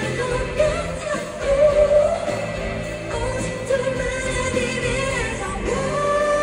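A woman singing a pop song live over band accompaniment, heard from the seats of a large arena.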